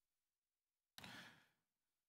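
Near silence, broken about a second in by one short, soft breath from a man, picked up by a close microphone.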